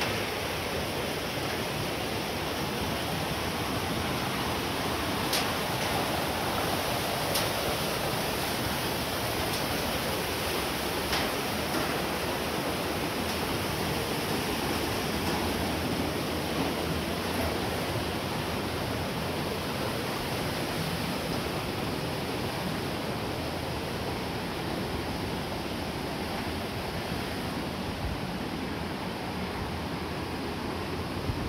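Steady rush of the Kamieńczyk mountain stream and waterfall in a narrow rock gorge, with a few sharp ticks now and then.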